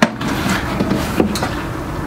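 A white plastic step trash can being turned over in the hands, giving a few light plastic knocks over a steady background noise.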